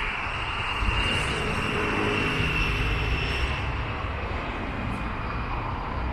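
Steady mechanical roar with a faint high whine that fades after about three and a half seconds.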